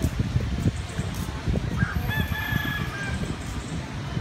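A single drawn-out bird call, held for about a second near the middle, over a steady low rumble with repeated thumps.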